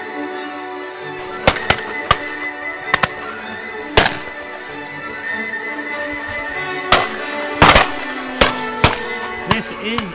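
Shotgun shots fired at a radio-controlled target plane: about nine sharp reports, loud and irregularly spaced, some close together, over steady background music.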